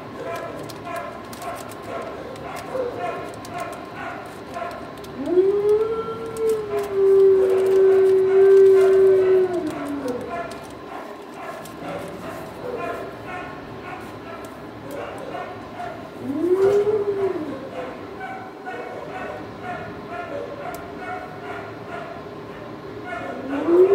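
Kennel dogs barking continually in the background. A dog howls one long howl that rises, holds steady and falls away about five seconds in, then gives a shorter howl about sixteen seconds in.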